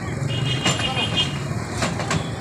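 Street noise with a vehicle engine running low, voices around, and a few sharp metal knocks as a wheeled stretcher is pushed into the back of an ambulance.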